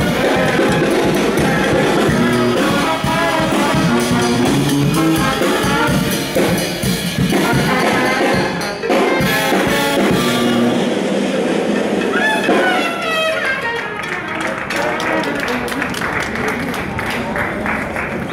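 High school brass band playing jazz, with sousaphone, trombone and drums. The tune ends about two-thirds of the way through with a rising brass glide, and the last few seconds are quieter, with voices.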